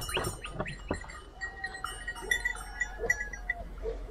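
A flock of Țigaie sheep bleating, with one long drawn-out bleat in the middle. A row of faint, quick, high-pitched ticks runs alongside it.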